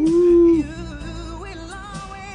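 A man's voice sings a slow pop ballad over soft backing music. It holds one loud note for about half a second, then moves through quieter melodic runs.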